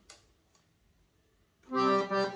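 Universal 80-bass piano accordion: after a near-silent pause, a chord sounds about a second and a half in and is held steady, the start of another verse of a hymn.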